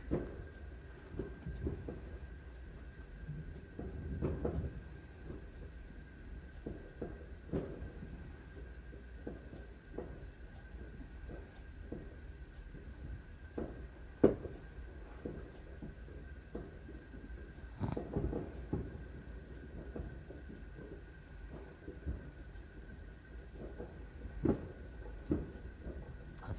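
Fireworks going off outside, heard muffled through a window: scattered bangs and pops, the sharpest about fourteen seconds in, with small clusters around four, eighteen and twenty-five seconds.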